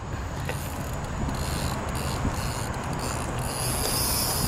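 Fishing reel's drag running steadily as a hooked common carp strips line off the spool on a run.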